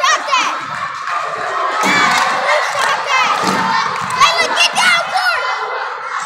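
A group of young girls shouting and cheering together in a gymnasium, many high voices overlapping without a break.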